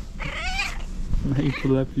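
A cat gives one short meow, wavering in pitch, in the first second, followed by a man laughing.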